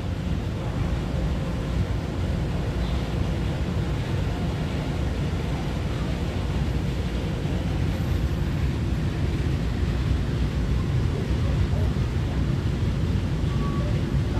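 Steady low rumble of a standing EMU900 electric multiple unit with its doors open at the platform, mixed with wind buffeting the microphone.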